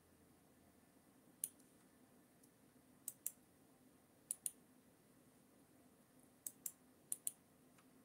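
Computer mouse clicking against quiet room tone: a single click, then four quick double clicks spread over the following seconds.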